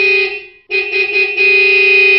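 Music: a loud, held, buzzy synthesizer note at one pitch. It breaks off about half a second in and comes back a moment later.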